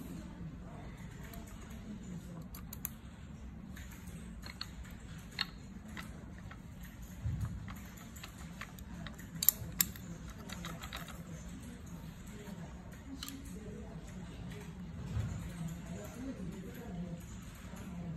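Small metal and plastic parts clicking and tapping as a sweeper attachment is fitted onto the arms of an RC skid steer loader: scattered light clicks, a couple of duller knocks, and two sharp clicks close together about halfway through, the loudest.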